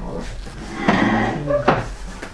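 Close rustling handling noise, loudest about a second in, with a sharp click or knock near the end.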